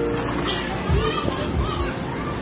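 Children's voices and brief calls over general outdoor noise, with background music fading out near the start.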